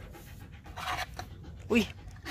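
A dog panting, with a short exclaimed "ui" near the end.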